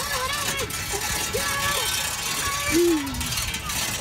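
Steady rattling and road noise from a four-wheeled pedal surrey bike being ridden, with a few short wordless vocal sounds like humming, one sliding down in pitch near the end.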